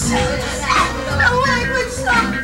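Live band playing, with voices over the music.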